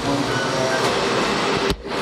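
Steady, machine-like hum and hiss of a café serving area, dropping out briefly near the end.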